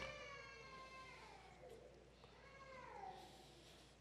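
Near silence, with two faint, drawn-out pitched calls: one falling at the start, and a second that rises and then falls about two and a half seconds in.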